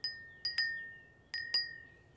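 A wind chime ringing in light strikes: about five in two seconds, a lone one at the start and then two quick pairs, each a single clear high tone that rings on and fades.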